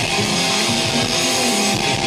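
A metal band playing live through the venue's PA, with distorted electric guitars to the fore over drums, heard from the audience.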